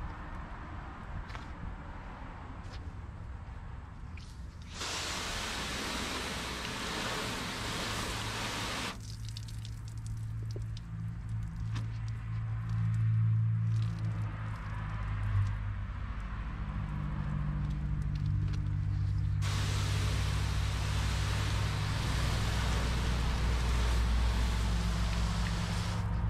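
Water spraying onto a painted car door panel for about four seconds a few seconds in. A wash mitt then scrubs the soapy panel with a steady low hum underneath, and the spraying starts again for the last several seconds.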